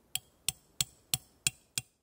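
Hammer driving a metal tent stake into the ground: six quick, even strikes, about three a second, each with a short metallic ring.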